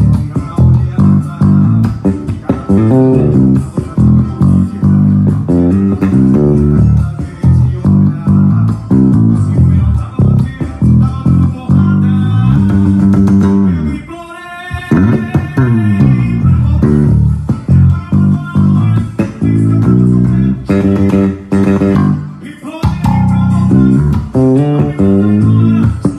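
Electric bass played fingerstyle in a busy, bouncing forró line along with a recorded forró band track. The music eases off briefly about fourteen seconds in, then picks up again.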